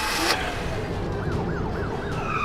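A police siren starting up about a second in, wailing fast up and down, over a steady vehicle engine rumble.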